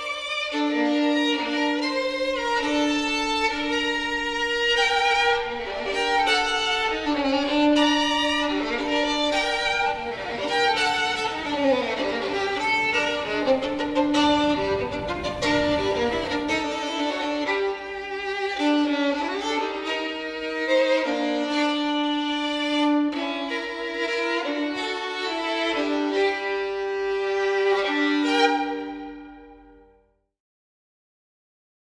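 Violin playing a melody with long held notes, fading out near the end.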